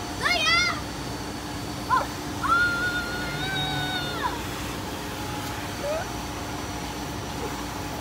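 Young girls' high-pitched laughter near the start and a long held squeal about halfway through, over the steady hum of a car-wash vacuum running.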